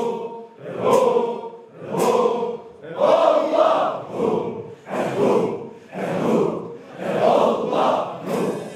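A congregation of men chanting a Sufi dhikr in unison, a loud rhythmic chant that swells about once a second as they bow. Large hand cymbals clash on some of the beats.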